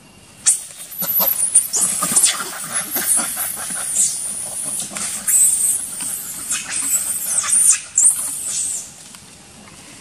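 Macaque monkeys screaming during a scuffle: a long run of shrill, wavering screams that starts about half a second in and stops near the end.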